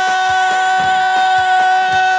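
Live Middle Eastern band music: one long note held steady over an even drum beat.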